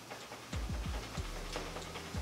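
A run of soft, uneven low thumps with faint clicks, about two or three a second, from a broomstick being shaken rapidly back and forth in both hands, driven by the hips.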